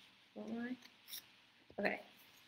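Scissors cutting a sheet of paper, with a short crisp snip a little over a second in.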